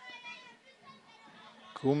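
Faint distant voices calling and shouting around a soccer field during play, then a close commentator's voice starts near the end.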